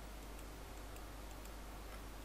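Faint, irregularly spaced clicks of a computer mouse being pressed and released, over a steady low hum and room noise.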